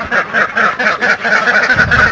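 A flock of Alabio ducks quacking, many short calls overlapping in a rapid, continuous chatter.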